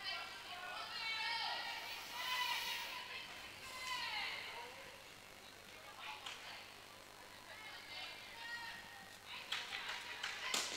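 Faint, echoing high-pitched voices of the players calling out across an indoor sports hall, with a few short clicks near the end.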